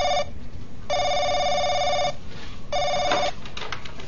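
Desk telephone's electronic ringer trilling in repeated rings about a second long, with short gaps between them. The last ring is cut short as the phone is answered.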